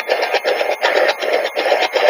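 SB-11 spirit box sweeping through radio stations: a continuous run of static and broadcast fragments chopped into many short snippets a second.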